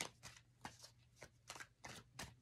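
Faint shuffling of a tarot deck in the hands: a string of soft, irregularly spaced clicks of cards slipping against each other.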